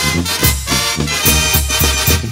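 Mexican banda brass band playing an instrumental passage of a corrido, wind instruments over a steady bouncing bass-and-drum beat, with no singing.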